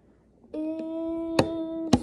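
A person humming one steady, unchanging note for about a second and a half, starting about half a second in. Two sharp handling clicks fall over it, the louder one just as the hum breaks off.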